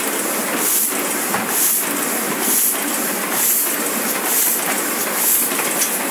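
Demy-size sheet-fed offset printing press running, with a steady mechanical clatter and a sharp hiss that repeats evenly a little faster than once a second, six times in all.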